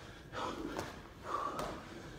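A man breathing hard from exertion: two forceful, breathy exhalations, one soon after the start and one past the middle, as he pushes through the last burpee of a one-minute all-out set.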